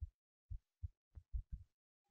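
Near silence broken by about six faint, irregular low thumps.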